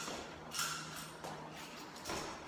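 Scuffs and rustles from a ProFlex underlayment membrane being handled and walked on, with a louder scuff about half a second in, over a steady low hum.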